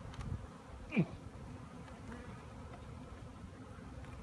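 Honeybees buzzing steadily around an open hive full of bees on the frames.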